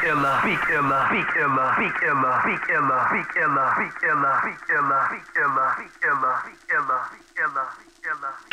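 Hip hop beat breakdown with the drums and bass dropped out, leaving a short chopped voice sample looped about twice a second. Each repeat falls in pitch and has a thin, radio-like tone, and the loop grows choppier, with gaps, toward the end.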